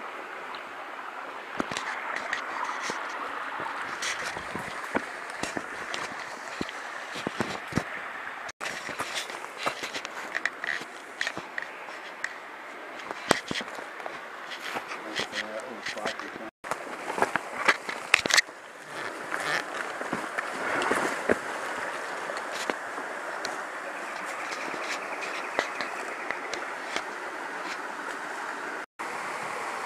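Footsteps and camera-handling knocks, irregular sharp clicks and scrapes, as a hiker scrambles over creek-bed rocks with a handheld camera, over a steady rushing background. The knocks come thickest in the middle stretch.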